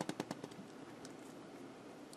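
A ballpoint pen dragged along a ruler over textured non-slip rubber shelf liner, giving a rapid, even run of small clicks that fades out about half a second in.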